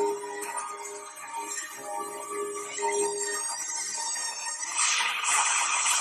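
Dramatic film soundtrack music with long held notes, swelling into a rush of noise near the end.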